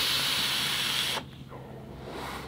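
Vape draw on a squonk mod's atomizer: a steady hiss of air pulled through the airflow over the firing coil. It stops about a second in, leaving a much fainter breathy hiss as the vapour is exhaled.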